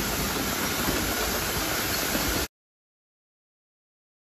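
Steady hissing machinery noise from a shrink sleeve labeling line. It cuts off suddenly about two and a half seconds in.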